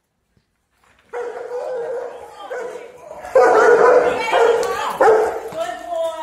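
Large dog barking repeatedly in an aggressive state, starting about a second in, with the loudest barks from about three seconds on, mixed with a person's voice.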